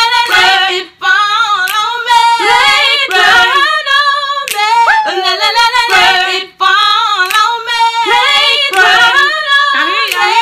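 A woman singing unaccompanied, a melodic line of held notes and gliding pitches, with two brief breaks for breath.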